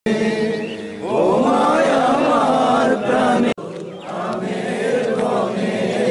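A group of voices singing together in unison, with an abrupt cut about three and a half seconds in.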